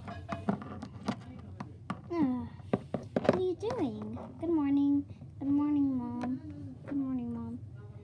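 A girl's high voice making wordless sounds in several long, level held notes, hum-like or sung. Light clicks and taps of small plastic toy figures being handled come in the first few seconds.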